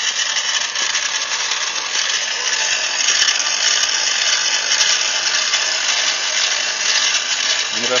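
SDS drill serving as the spit-roast rotisserie's drive motor, running steadily and turning the spit through a chain drive: an even, hiss-like whirr with no breaks.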